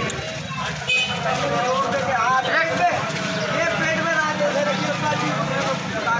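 Several men's voices talking and calling out over one another, over a steady low hum of background noise. A brief high-pitched tone sounds about a second in.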